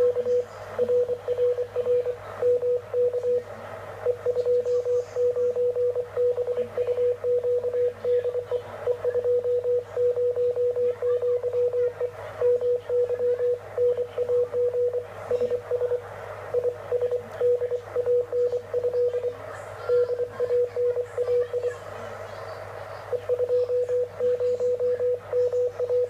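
Morse code (CW) signal received on a Yaesu 2-metre transceiver: a single steady beep tone keyed on and off in dots and dashes, pausing briefly a few seconds in and again near the end, over a low steady hum and receiver hiss.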